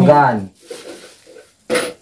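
People talking in a small room, a voice loudest in the first half second and fainter murmuring after. Near the end comes one short, sharp burst of noise.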